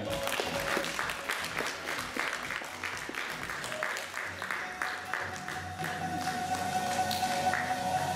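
Many hands applauding over background music, with a held musical tone entering about five seconds in.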